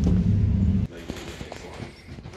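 A low rumble mixed with murmuring voices, cut off abruptly under a second in, after which only quiet room sound with faint voices and small clicks remains.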